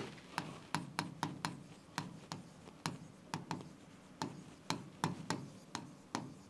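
Handwriting on a board: the pen tip taps and scrapes briefly as each stroke starts, giving faint, irregular sharp ticks about three a second.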